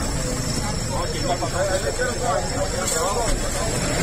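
Indistinct voices of people talking over a steady low rumble of street noise.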